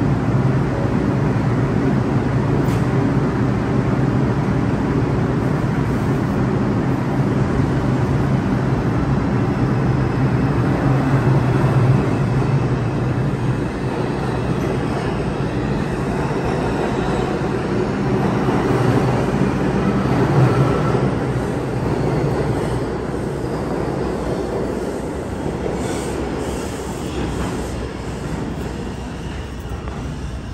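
New York City subway train of R142-series cars pulling out of an underground station: a steady, loud rumble of wheels and motors on the rails, easing off over the last several seconds.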